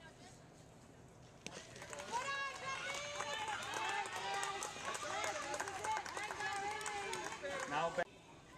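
A single sharp crack of a softball bat hitting the ball about a second and a half in, followed by many high young girls' voices shouting and cheering over one another.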